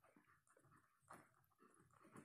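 Near silence: room tone with a few faint, brief sounds, the clearest about a second in.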